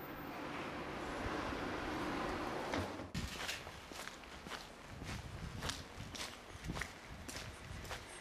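Footsteps of a person walking on a paved street, about two steps a second, starting about three seconds in. Before them, a rushing noise swells and then cuts off suddenly.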